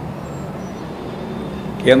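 A pause in a man's speech filled by steady background noise with a low hum, until his voice comes back in near the end.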